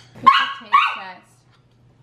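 A dog giving two short, high-pitched barks in quick succession.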